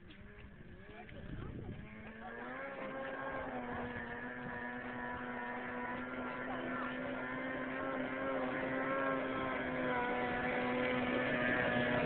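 A small motorized watercraft's engine, throttling up about two seconds in and then running at a steady pitch, growing louder as it approaches across the water.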